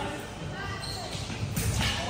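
Voices echoing in a large gymnasium, with dull thuds on the floor near the end.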